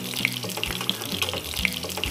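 Salmon cakes frying in olive oil in a sauté pan, a steady sizzle and crackle, over background music with sustained low notes.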